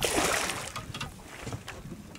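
A large pike thrashing at the surface beside a boat: a burst of splashing water right at the start that dies away within about half a second, then a few small slaps of water.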